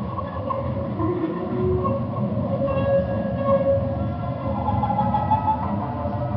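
Tarhu, a bowed spike fiddle, played in long sustained notes over a dense low rumbling noise that runs steadily throughout.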